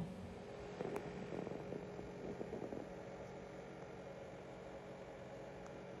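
Quiet room tone with a low steady hum. A light click comes about a second in, followed by soft scattered rustling and shuffling for a couple of seconds.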